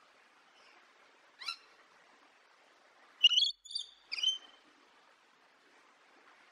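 Rainbow lorikeet calling: one short high-pitched call about a second and a half in, then three quick, louder screeches in a row a little past the middle, the first the loudest.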